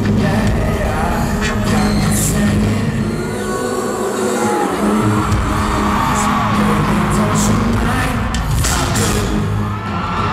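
Live band playing a funk-pop groove with heavy bass over an arena sound system, recorded from the audience. The bass drops out for about a second and a half near four seconds in, then comes back in. Crowd whoops and cheers ride over the music.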